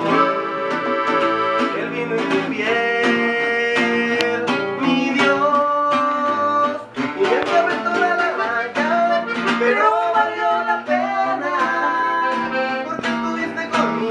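Live norteño music in an instrumental passage: a button accordion playing the melody over a strummed guitar.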